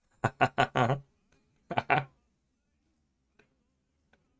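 A man laughing: a quick run of four short laughs in the first second, then another brief laugh about two seconds in.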